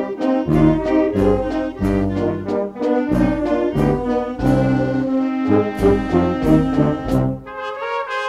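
Music played by brass instruments, with a low bass line and regular percussion strikes; the bass drops out near the end.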